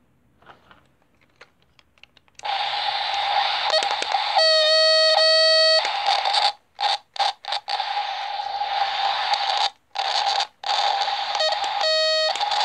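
Toy police radio playing its static sound effect: a loud hiss with a steady tone starting about two seconds in, a long electronic beep in the middle, then the static cutting on and off several times, with another short beep near the end.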